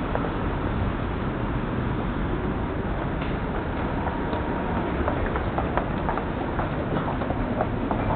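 City street traffic noise, with footsteps clicking on a hard walkway that grow more distinct from about five seconds in.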